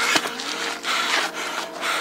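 A man breathing heavily, a harsh breath about once a second, with a sharp click just after the start.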